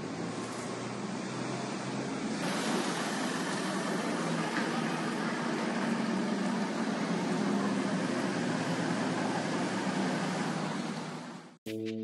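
Steady rushing city-street noise with traffic, picked up by a phone's microphone; it grows a little louder about two seconds in and cuts off abruptly just before the end.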